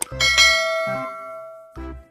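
A bell chime struck once just after the start, its ringing tones fading away over about a second and a half: a notification-bell sound effect. Short bursts of bouncy background music come back near the end.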